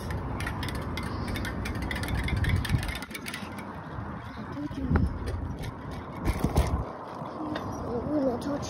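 Bicycle riding sounds picked up by a hand-held phone: rumbling wind on the microphone and tyres on pavement, with frequent small clicks and rattles from the bike and the phone being handled.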